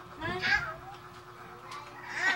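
A single short, high-pitched cry about half a second in, then only faint room noise.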